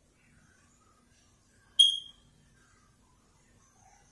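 A single short, high-pitched chirp about two seconds in, ringing briefly before it fades, in an otherwise quiet room.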